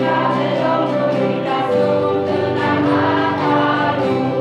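A children's choir singing a church song together, with notes held and flowing on without pause.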